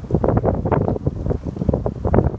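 Wind buffeting the microphone in uneven gusts, a rumbling rustle with no steady tone.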